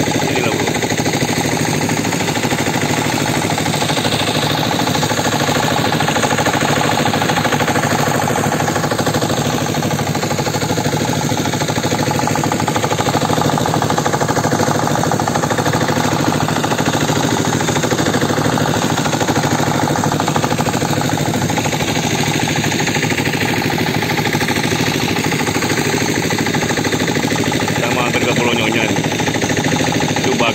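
Engine of a motorised outrigger fishing boat running steadily under way, a loud, even, fast chugging that does not change.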